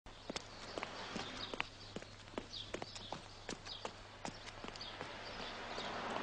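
Footsteps walking on pavement, a sharp step about every half second, fairly quiet.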